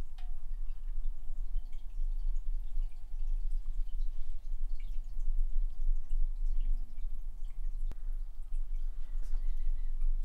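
Small lure-drying rotisserie motor running with a steady low hum as it slowly turns lure heads whose epoxy coat is curing, with faint scattered ticks.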